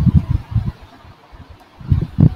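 Soft, irregular low thumps and bumps of handling noise near the microphone, with a single sharp click at the start. The noise is quieter through the middle and picks up again near the end.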